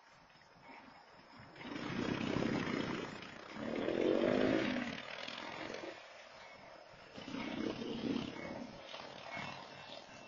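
Motorcycle engines revving as the bikes accelerate past, in surges, the loudest about four seconds in. A smaller surge from another passing vehicle comes near the end.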